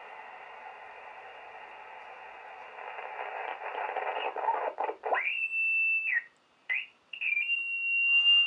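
Shortwave receiver hiss, then the Heathkit VF-1 VFO's signal tuned in on 20 meters as a whistling beat note. About five seconds in, the tone sweeps up to a high steady pitch. It breaks off briefly with a couple of quick sweeps as the dial moves, then comes back steady near the end.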